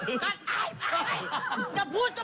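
People laughing in short, breathy bursts, with some talk mixed in.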